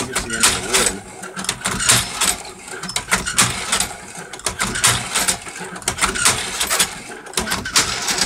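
Hand-cranked cherry pitter prototype in operation: its drum turning and the pitting pin bar working against the cups, giving a rapid, irregular clatter of clicks and clacks.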